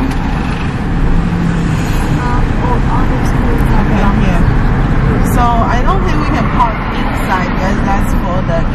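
Road noise inside a moving car, a steady low rumble, with people talking indistinctly over it.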